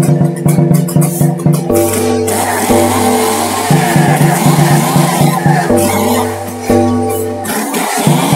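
Electronic background music with a steady beat and a deep bass line that changes note about once a second. A hissing noise layer comes in about two seconds in and fades out shortly before the end.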